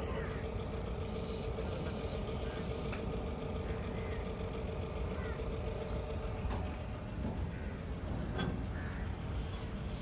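Steady background rumble with a faint continuous hum and faint distant voices: outdoor crowd and machinery ambience. The hum fades out about two-thirds of the way through.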